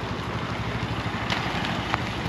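A 2022 Honda Grom SP's small single-cylinder engine running steadily as the mini motorcycle is ridden past.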